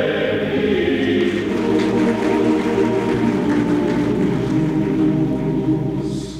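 A choir singing slow, held chords.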